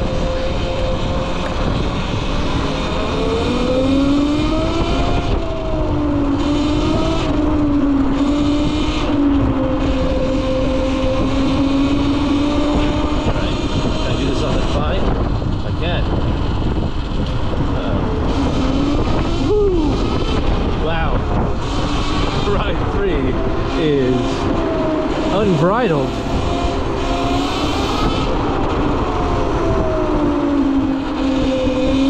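Cake Kalk& electric motorcycle on the move: its electric drivetrain gives a pitched whine that rises and falls with speed over a steady rush of riding noise. The pitch dips sharply a couple of times in the second half.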